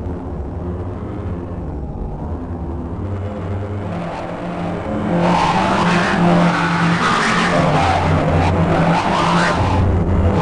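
Harsh granular-synthesis noise from the RTGS-X software synthesizer, its grains steered by webcam motion tracking: a low, stepping drone that turns louder and grittier about halfway through, with noisy swells.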